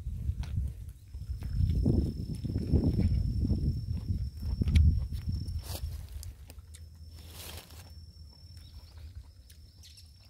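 Rumbling handling noise and footsteps through dry leaves and undergrowth as a phone is carried, loudest in the first half and dying down after about six seconds. A thin, steady high tone runs behind it, with a short hiss about seven seconds in.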